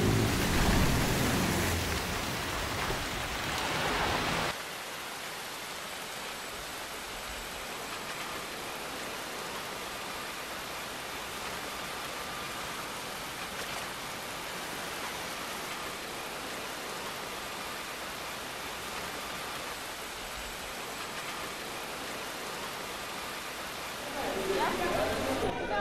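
A louder, deeper rushing noise that cuts off abruptly about four and a half seconds in, then a steady, even hiss like rain or running water.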